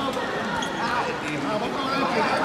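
Indistinct shouting and chatter from people around the mat, echoing in a large sports hall.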